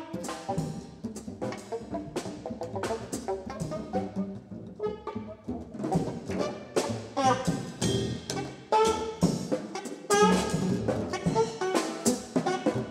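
Free-improvised jazz on saxophone, double bass and drum kit: scattered drum and cymbal strikes throughout under plucked bass, with the saxophone's pitched lines coming forward and growing louder in the second half.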